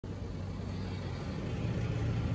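A steady low rumbling wash of noise with a hum and a hiss, slowly growing louder, forming the ambient intro of an electronic remix.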